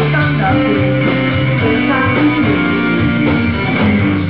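A rock band playing live, with a Stratocaster-style electric guitar prominent in the mix and no singing.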